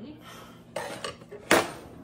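Cutlery clinking against a dessert plate while eating, a light clink about three-quarters of a second in and a louder one around a second and a half.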